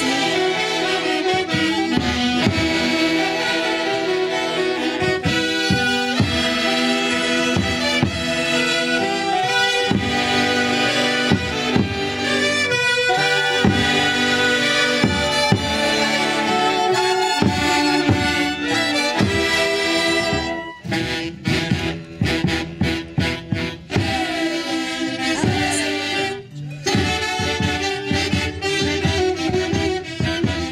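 A saxophone-led Andean orquesta típica playing a lively, rhythmic instrumental passage of festive Santiago music. It turns choppier, in short stop-start phrases, about two thirds of the way through.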